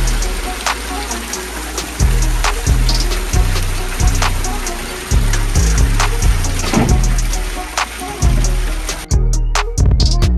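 Background music with a steady beat over the rush and splash of meltwater pouring in through a leaking basement window frame onto a flooded floor. The water noise stops suddenly about nine seconds in, leaving the music.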